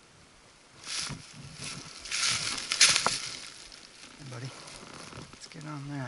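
Dry forest litter and brush crunching and rustling as a hiker pushes through undergrowth, in uneven bursts, the loudest about two to three seconds in with a sharp click.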